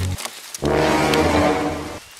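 A low, horn-like sustained note from a comedy music sting. It stops just after the start, sounds again for about a second and a half, then cuts off.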